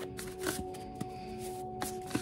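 A deck of cards being shuffled by hand, with a few sharp card slaps and soft sliding. Background music with steady held tones plays underneath.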